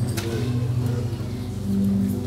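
Electric keyboard holding sustained low organ-style chords, several steady notes at once, with a new note coming in near the end.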